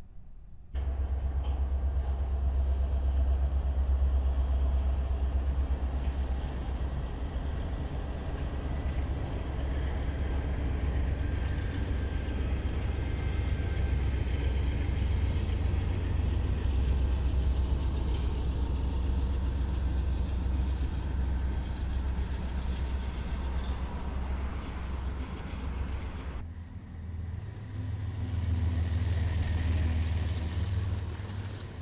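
Diesel freight locomotives, among them a Canadian Pacific heritage EMD SD70ACU, passing close by with a steady, heavy engine rumble and wheel-on-rail noise. About 26 s in it cuts to another freight train's locomotives passing, with more high-pitched wheel and rail hiss.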